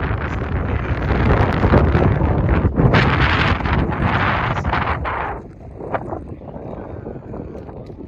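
Wind buffeting the phone's microphone, a loud, rumbling rush that eases off about five seconds in.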